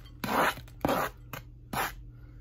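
Crumbled bacon being scraped off a flexible plastic cutting board into a mixing bowl: three short scrapes.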